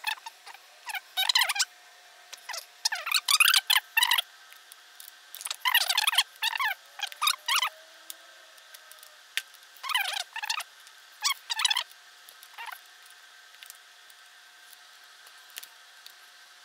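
A new spark plug is being screwed into a Yamaha DT200R's cylinder head with a plug wrench, making squeaky metal-on-metal squeals in short, irregular bursts with a few clicks. The squeals thin out after about twelve seconds as the plug seats.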